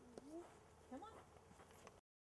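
Faint vocal sounds from a young child: two short rising calls, about a quarter second and a second in, against near silence.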